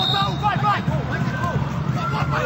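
A referee's whistle, one steady high blast that ends about half a second in, over stadium crowd noise and voices as a free kick is about to be taken.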